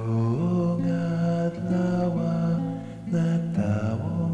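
A Cebuano hymn sung by a solo voice in held, steady notes over acoustic guitar accompaniment.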